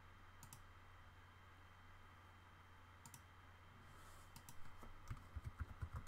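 Quiet computer mouse clicks, then a quick run of keyboard keystrokes starting about two-thirds of the way through, over a low steady hum.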